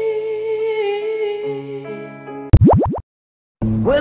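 A woman singing a long, wavering held note over sustained chords. About two and a half seconds in, this cuts to a brief, loud run of fast rising pitch sweeps, then half a second of dead silence before another song begins near the end.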